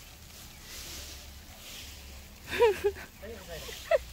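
Faint hiss of a garden sprinkler on a hose spraying water over dirt, with a person's voice breaking in briefly about two and a half seconds in.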